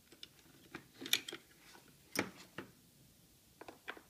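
Hard plastic-and-metal clicks and clacks as a car seat's LATCH connector is handled and pulled out of its storage spot on the seat base. There is a loud clack about a second in and another just after two seconds, then a few quick clicks near the end.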